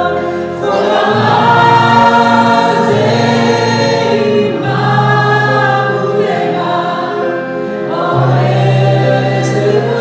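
Live gospel worship song: a man and a woman singing together to acoustic guitar and stage piano, in long held phrases of three to four seconds.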